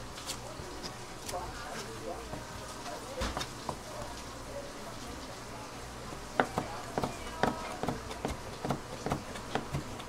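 Kitchen knife cutting raw stingray wing on a plastic cutting board. About six seconds in a run of sharp knocks begins, roughly two to three a second, as the blade hits the board. Faint voices and a low hum sit underneath.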